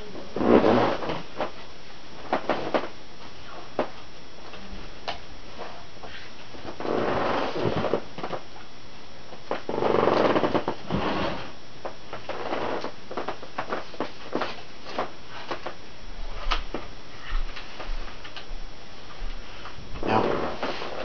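Handling noise: scattered light clicks and knocks with a few longer rustles, about half a second in, around seven seconds and around ten seconds in.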